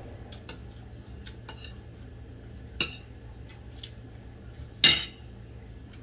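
A metal spoon and fork clinking against a ceramic plate while eating, with small clicks throughout and two sharper, ringing clinks about three and five seconds in, the second the loudest.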